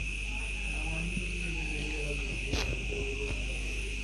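Metal spatula stirring and scraping leafy water spinach in a metal karai, with one sharper scrape against the pan about two and a half seconds in. A steady high insect chirring runs underneath.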